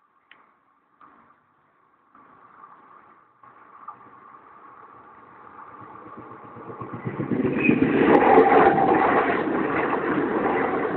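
ALe 501/502 Minuetto electric multiple unit approaching and passing close, its rumble and wheel noise on the rails growing from faint to loud over several seconds and loudest in the last few. A faint steady ringing tone from the level crossing's warning bell sounds under the early part of the approach.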